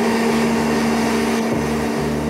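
Canister vacuum cleaner running steadily as its nozzle is pushed over a rug.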